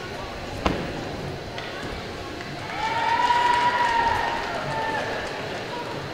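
Gymnastics hall background of distant voices and movement, with one sharp knock under a second in. In the middle comes a long held high note lasting about two seconds, the loudest sound here.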